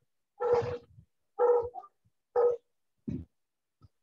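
A dog barking four times, about a second apart, heard through a video-call microphone.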